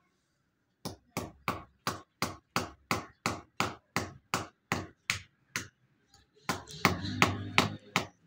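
A hand hammer striking repeatedly at a brick-and-plaster wall, sharp blows at about three a second that start about a second in and keep an even rhythm.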